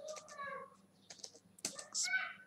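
A computer keyboard being typed on: a handful of separate keystrokes, quicker in the second second.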